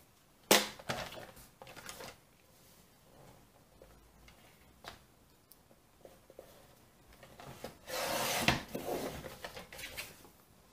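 Sliding paper trimmer cutting cardstock: a short rasp of the blade running along its track near the end, after a knock and a few light handling clicks at the start.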